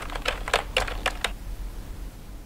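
Typing keystrokes, about nine quick clicks in just over a second, then they stop.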